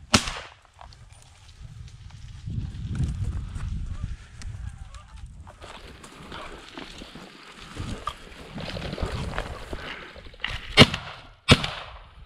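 Benelli shotgun fired at flushing birds: one shot right at the start, then two quick shots less than a second apart near the end, the first of the pair the loudest. Low rumbling noise fills the stretch between.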